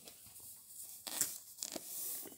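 Faint rustling and crinkling handling noise, a few light rustles over about two seconds.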